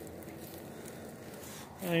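Faint, steady background noise with no distinct sounds; a man starts speaking near the end.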